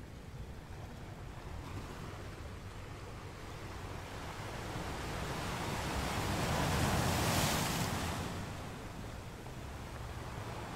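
Ocean surf breaking and washing over a rocky shore, a steady rush in which one wave swells to its loudest about seven seconds in and then dies away.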